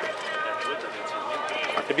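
Background chatter of several people talking, with no engine running yet.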